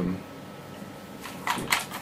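A few short, light clicks and rattles from handling a King Arms AK-74M airsoft electric rifle as its parts are wiggled to check for play, coming in the last half-second after a quiet stretch.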